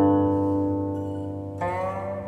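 Guqin being plucked in a slow melody: a note struck just before rings and fades away, then another note is plucked about one and a half seconds in, with a slight upward slide in pitch.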